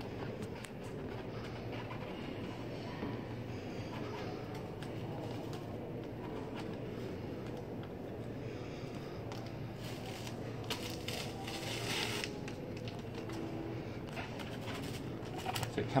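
Fingertips rubbing transfer tape and vinyl lettering down onto the skin of a large latex balloon: faint scraping over a steady room hum, with a denser run of quick scratchy rubbing strokes about ten to twelve seconds in.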